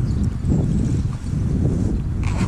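A continuous, uneven low rumble, with a few faint clicks from fishing lures being handled in a soft lure wallet.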